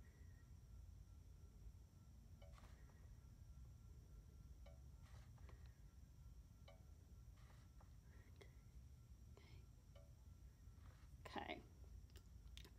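Near silence: a low steady hum with a few faint, scattered clicks as a hot glue gun is worked along a PVC pipe.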